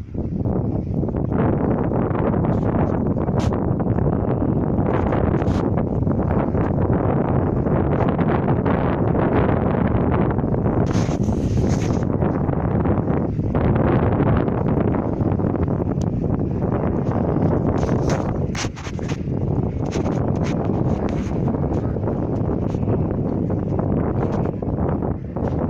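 Wind buffeting the phone's microphone: a loud, steady rushing that starts suddenly and holds throughout, with a few brief crackles near the middle and toward the end.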